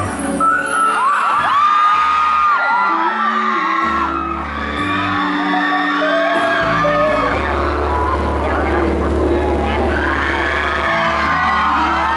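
Pop song playing loud over a stage PA, with long held bass notes, while audience members whoop and shout over it.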